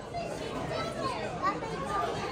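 Background chatter of diners in a busy restaurant dining room, with children's voices mixed in.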